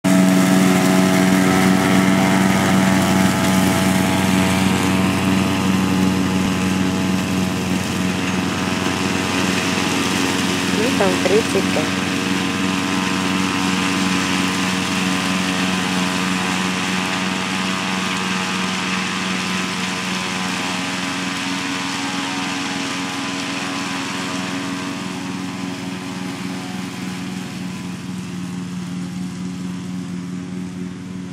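Ride-on lawn mower's engine running steadily under mowing load, its level slowly falling as the mower moves away.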